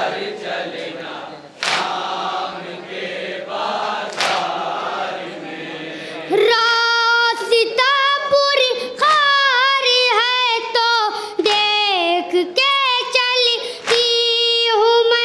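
A group of mourners chanting a noha in chorus, broken by a few sharp slaps of matam chest-beating. About six seconds in, a boy's solo voice takes over, reciting the noha in a high, melodic lament through a microphone and PA.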